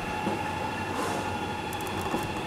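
Steady hum of running distillery machinery, with two steady whining tones over it, from the working mash tun. Faint soft knocks of footsteps on a stepladder come through.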